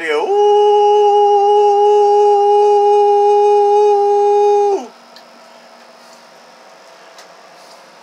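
A man's voice holding one long steady note into the microphone of a single-sideband radio, driving a linear amplifier so that it draws heavy current. The note stops after nearly five seconds, leaving only a faint steady background noise.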